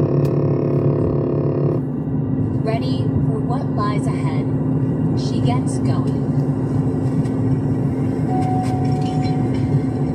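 Steady engine and road drone inside a vehicle's cabin while driving at speed, with a radio programme playing over it: a held chord in the first two seconds, then scattered short tones.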